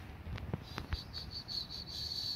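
A cricket chirping: a high, pulsed call at about eight pulses a second that runs together into a steady trill near the end. A few soft clicks come before it in the first second.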